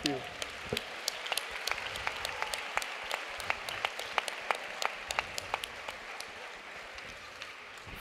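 Audience applauding in a hall, with single claps standing out from the steady clapping; it tapers off near the end.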